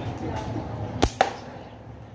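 A slingshot's flat rubber bands snap forward as a shot is released about a second in, and a fraction of a second later comes a second sharp crack, the ball striking the target.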